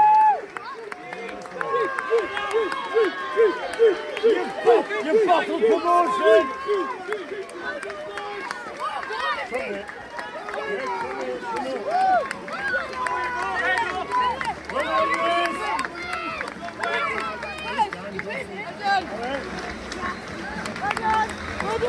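Football fans at the pitchside shouting and calling out to players as they pass, many voices overlapping, with a quick string of repeated short calls a few seconds in.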